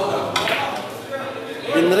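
Sharp click of pool balls as a shot is struck about a third of a second in, amid crowd chatter in a hall. The shot ends in a scratch, the cue ball going into a pocket.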